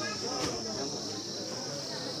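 Steady high-pitched insect chirring, with faint crowd voices beneath.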